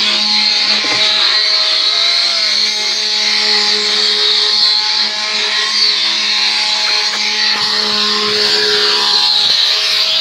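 Wooden ox cart (carro de boi) axle singing as its solid wooden wheels turn: a loud, steady, droning squeal held on one pitch with overtones, with a few brief sliding notes.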